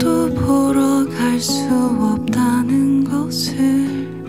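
A woman singing live to her own fingerpicked acoustic guitar, her voice moving through long held notes over the plucked strings.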